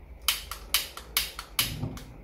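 Handheld piezo gas lighter clicked about six times at a gas hob burner, each a sharp snap, until the burner lights.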